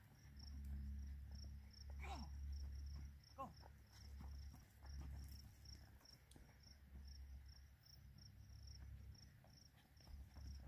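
Faint cricket chirping: a short high chirp repeating evenly, a few times a second, over a low rumble. Two brief sweeping sounds come about two and three and a half seconds in.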